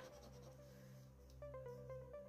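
Faint scratching of a lottery scratch card's coating with the end of a metal teaspoon, over quiet background music.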